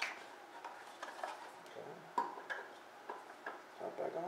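A scatter of light clicks and taps as the air cleaner's top cover and retaining nut are handled and fitted by hand, the sharpest tick about two seconds in.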